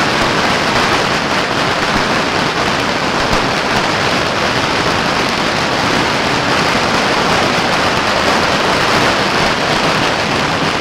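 Strings of firecrackers going off in a dense, unbroken crackle that stays loud and steady.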